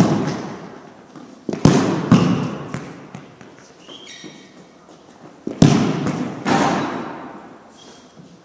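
A futsal ball being kicked and striking the goal wall and the keeper, loud thuds that echo around a gymnasium hall. They come in two pairs, one about a second and a half in and one about five and a half seconds in.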